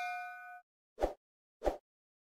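Notification-bell chime sound effect: a bright metallic ding whose ringing fades and cuts off suddenly about half a second in, followed by two short soft pops a little over half a second apart.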